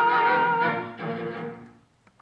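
Orchestral ending of a vintage Italian rumba song: the band holds a full chord, breaks off, plays one short last chord about a second in, then dies away to silence.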